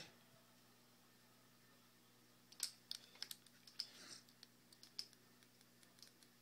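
Faint, irregular small clicks from buttons being pressed on a paintball marker's electronic trigger frame, about a dozen over a couple of seconds starting partway in.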